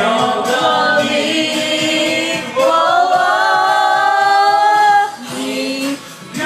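A girl singing a slow song into a handheld corded microphone. She holds one long steady note from about two and a half seconds in until about five seconds, then breaks off briefly.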